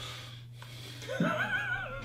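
A man laughing softly, one drawn-out wavering laugh starting about a second in, over a low steady electrical hum.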